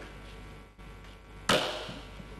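Hall room tone with a low hum, broken about one and a half seconds in by a single sharp knock with a short ringing tail.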